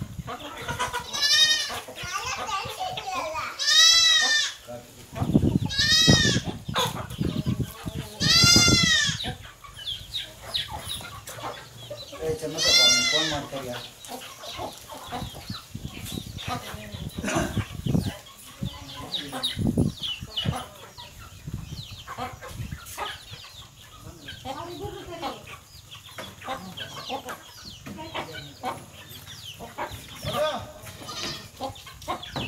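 A flock of free-range chickens calling: five loud calls in the first half, each rising and falling in pitch and a couple of seconds apart, then softer clucking.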